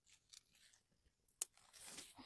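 Faint crackling and rustling of paper burning in a small fire, with one sharp snap about a second and a half in and a denser rustle near the end.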